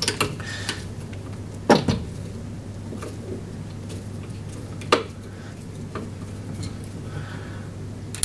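Metal clinks and knocks from a cross-head screwdriver and the mower's handle parts as a screw is loosened and taken out of the lower handle mounting. A few sharp knocks come near the start, about two seconds in and about five seconds in, the one at two seconds the loudest, with smaller clicks between, over a low steady hum.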